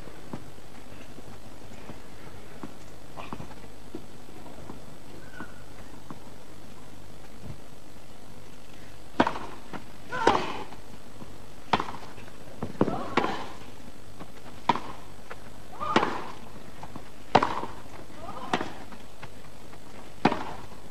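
A tennis rally on a grass court: a serve and then about nine sharp racket strikes on the ball, roughly one every second or so. The strikes start about halfway in, after a quiet first half.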